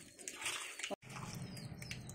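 A hand mixing raw fish pieces with spice powders and ginger-garlic paste in a bowl: faint, wet squishing. The sound cuts out briefly about a second in.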